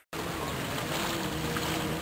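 Seaside ambience at the water's edge: a steady wash of wind and small waves, with a faint low hum running through it. It begins just after a short silent gap.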